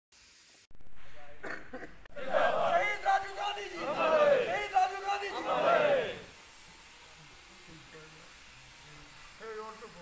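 A group of men shouting a slogan together with raised fists, loud chanting for about four seconds beginning about two seconds in, then dropping away to quiet.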